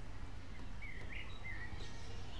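Steady low rumble with a few short, high bird chirps about a second in.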